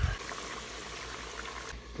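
Avocado halves deep-frying in hot vegetable oil: the oil sizzles with a steady hiss and faint crackle.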